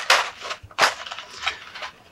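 A stiff black plastic packaging tray crackling and clicking as small action-figure parts are pried out of it by hand. The sharp crackles are loudest near the start and again about a second in, with smaller clicks after.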